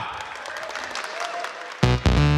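Audience applause and cheering in a large hall, as an even clatter of clapping. Near the end, loud recorded performance music cuts in suddenly with heavy bass beats.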